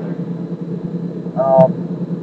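Steady low drone of a car being driven, heard from inside the cabin, with a man's brief 'um' about a second and a half in.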